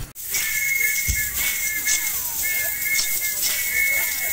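Live music for a Kamba traditional dance: a shrill whistle blown in long, steady blasts with short breaks, over a regular percussive beat of about two strokes a second and faint singing.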